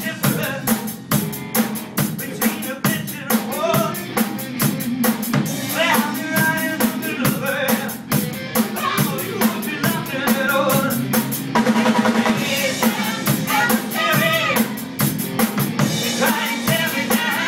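Rock band playing live: a full drum kit keeps a dense, steady beat of bass drum, snare and cymbals under electric guitars.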